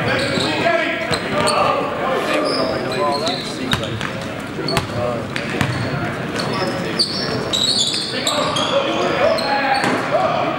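Live indoor basketball play: a basketball bouncing on a hardwood floor, sneakers squeaking, and players shouting indistinctly, all echoing in a large gym.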